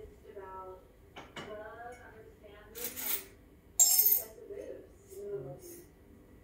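Crockery clinking as a cup is taken: two short clattering bursts about a second apart in the middle, the second the louder, with faint voices in the background.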